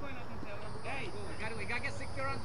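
Indistinct voices of several people talking at a distance over a steady low background noise, with no single clear speaker.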